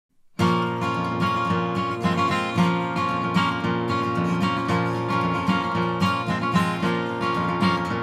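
Recording King steel-string acoustic guitar played solo, an instrumental intro of picked and strummed notes with a steady pulse, starting suddenly just after the beginning.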